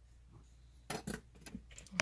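A few light metallic clicks and taps from tools being handled at a fly-tying bench: two sharp clicks close together about a second in, then several smaller ones.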